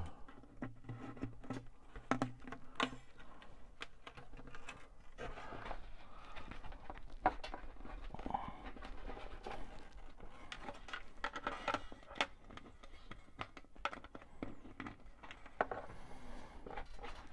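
Faint, scattered clicks and taps of hands working an acoustic guitar's bridge pins and strings, freeing a string whose ball end is snagged inside the body.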